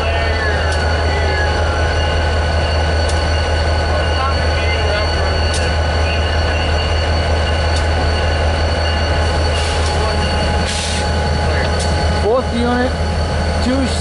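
Diesel-electric freight locomotives idling while the train stands waiting, a steady low rumble with a constant thin whine above it.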